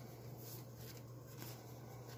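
Faint rustling and crinkling of Canadian polymer $20 banknotes as they are handled and shifted in the hands, over a low steady hum.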